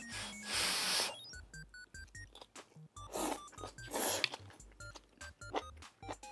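Slurping and eating sounds from a bite of broth-soaked pork wrapped around vegetables: one long slurp about half a second in, then two shorter slurps around three and four seconds, over background music.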